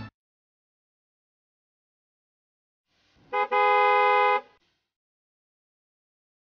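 A horn-like honk: a brief toot a little over three seconds in, then a steady honk lasting about a second that stops abruptly.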